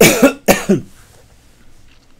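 A man coughing twice in quick succession, two short loud coughs about half a second apart.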